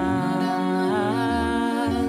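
Several female voices singing in harmony, holding long notes, with one voice wavering briefly near the middle, over a low sustained bass.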